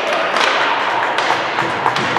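Ice hockey play: a steady scraping noise of skates on ice with several sharp knocks of sticks and puck.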